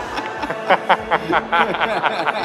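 A woman screaming and laughing with excitement in a quick string of short, high bursts, a joyful reaction to good news.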